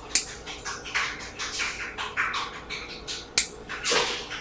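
Pedicure work on toenails: a run of short scratchy scraping strokes, a few a second, broken by two sharp clicks, one just after the start and a louder one about three and a half seconds in.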